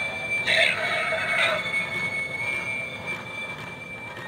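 Pan Asian Creations animated dragon doorbell playing its sound effect through its small speaker: two screeching bursts about half a second and a second and a half in, over a steady high tone, fading away toward the end.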